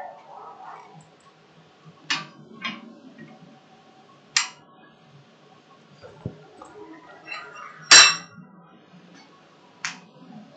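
A handful of separate, irregularly spaced metallic strikes and clinks: hammer taps on a steel bar being straightened on an anvil, the loudest near the end.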